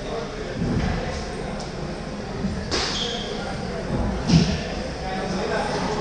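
Table tennis balls clicking off bats and tables in a large hall, a few scattered sharp knocks, over a murmur of indistinct voices; a louder dull thump comes about four seconds in.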